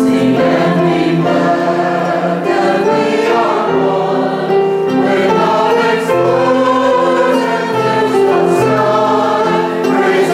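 Mixed church choir of men and women singing a sustained, steady anthem, accompanied by a small orchestra that includes flute and double bass.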